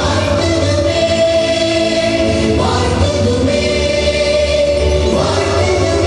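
A choir singing a slow song in long held notes that move to a new pitch every second or two.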